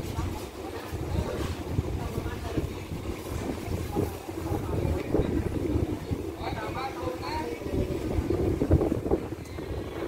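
Wind buffeting the microphone over a steady low rumble from a passenger train standing at the platform, with people talking indistinctly in the background.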